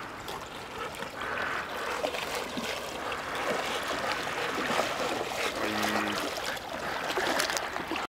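Two golden retrievers wading through shallow water, splashing irregularly with each stride as they come closer. A brief low pitched call sounds once, about six seconds in.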